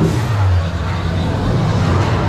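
Busy roller coaster loading station: a steady low rumble under the chatter of waiting riders and guests.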